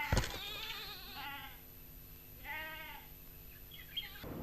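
Livestock bleating faintly: a long wavering bleat, then a shorter one about two and a half seconds in. A soft knock right at the start.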